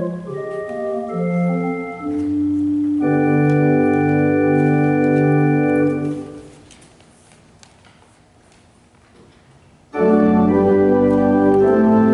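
Pipe organ playing a moving passage that settles into a held closing chord, released about six seconds in and dying away in the room. After a few seconds' lull the full organ comes back in loudly about ten seconds in.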